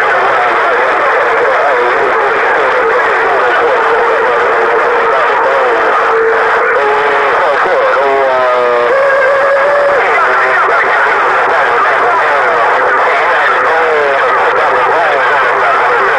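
President HR2510 radio's speaker receiving a loud, unbroken jumble of several stations transmitting over each other, garbled voices mixed with wavering whistles. A steady tone hangs underneath, and a stepped whistle glides through about halfway.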